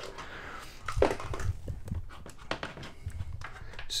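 Plastic screwdriver bit case being handled and opened: a soft rustle, then a series of short clicks and knocks from the case's clasp and lid, beginning about a second in.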